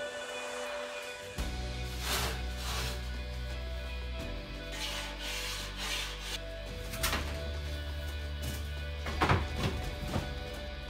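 Background music: held chords over a bass line that changes every few seconds, with a few short hissing hits.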